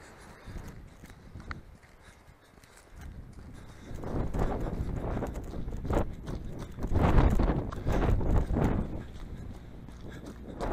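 Running footsteps on a gravel track, with wind buffeting the microphone. Quiet for the first few seconds, then much louder from about four seconds in.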